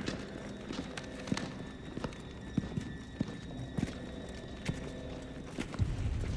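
Footsteps and clanks of armoured guards on a stone floor: scattered, irregular sharp knocks over a steady low hum, with a deeper thump near the end.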